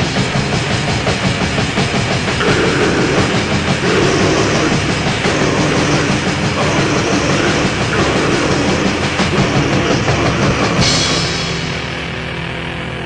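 Black/death metal band playing a dense, fast passage, with distorted guitars, bass and rapid, clattering drums and cymbals, from a 1992 cassette demo recording. About a second before the end, the drums and cymbals drop out and the level falls, leaving quieter, steadier sustained notes.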